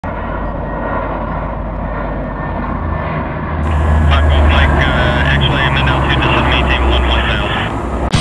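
A steady, low aircraft engine drone that grows louder about halfway in. An indistinct voice talks over it in the second half.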